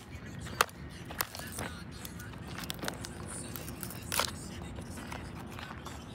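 A hand tool prying at a phone's casing, which a battery fire has melted shut, giving irregular sharp clicks and snaps with scraping between them.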